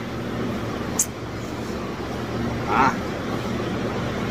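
Steady low hum of a cold room's refrigeration machinery. A single sharp click comes about a second in, and a short spoken "ah" near the end.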